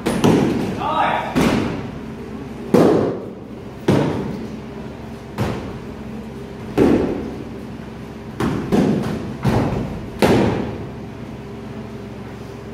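Soft-kit padded swords striking foam shields and padding in a sparring bout: about ten dull thuds at uneven intervals, some in quick pairs, each echoing in a large hall.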